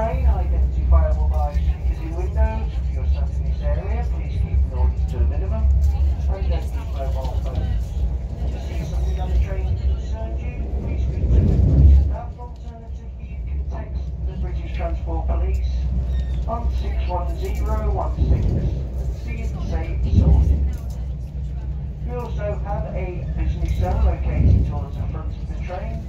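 Steady low rumble of a moving passenger train hauled by Class 68 diesel locomotive 68015, heard from inside a carriage, with passengers' voices talking over it. The rumble swells briefly and then eases off about twelve seconds in.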